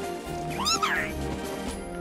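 Cartoon background music, with a short squeal from a character about half a second in that rises and then falls in pitch.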